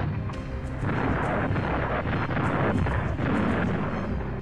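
Artillery shell explosions in a continuous rumble, with a few sharper cracks, over background music.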